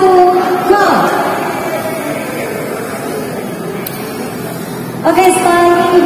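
A voice over a microphone and loudspeakers in a large hall, in two stretches, with a few seconds of steady crowd-and-hall noise between them.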